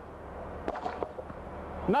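A polyurea-coated concrete cinder block, dropped from a rooftop, hits the pavement with a sharp knock about two-thirds of a second in, then a few lighter knocks as it bounces and settles. It lands whole: the spray coating keeps it from shattering.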